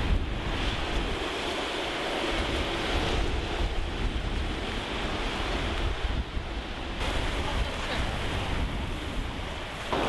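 Small surf washing onto a beach, with wind buffeting the microphone in a steady low rumble.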